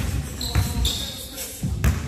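A basketball dribbled hard on a hardwood gym floor, several bounces, with a couple of short high squeaks in the first half.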